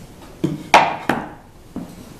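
Pieces of plywood being handled and set down on a plywood crosscut sled: four short wooden knocks, the loudest a little under a second in.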